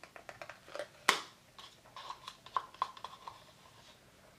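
Faint small clicks and taps from a palette knife scooping heavy body acrylic paint out of a small plastic jar, with one sharper click about a second in and a few light ticks against the jar later on.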